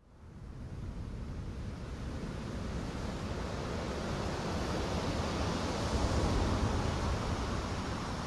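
A steady rushing noise with a low rumble, fading in from silence and slowly growing louder.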